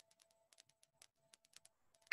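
Near silence: the room tone of an open video call, with faint scattered clicks, several a second, over a faint steady hum.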